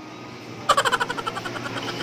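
A burst of rapid electronic beeps or chimes from an arcade game machine, about a dozen a second. It starts suddenly, loudest at first, and fades out over about a second.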